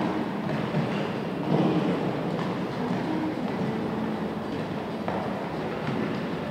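Steady rumbling background noise of a large indoor arena, with a brief louder swell about one and a half seconds in.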